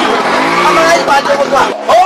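A step-through motorbike's small engine revving up and falling back in the first second, with voices over it.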